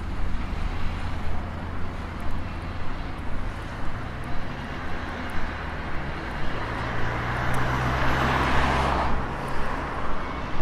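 Street traffic: the steady low hum of engines, with one vehicle passing close that swells to its loudest about eight to nine seconds in and then fades.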